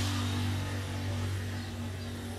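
A steady low hum with a fainter higher tone over a light hiss, slowly getting quieter.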